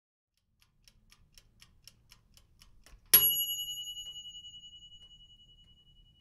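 Ticking sound effect, about four ticks a second and growing louder, ending about three seconds in with a single loud bell ding that rings on and slowly fades, like a kitchen timer going off.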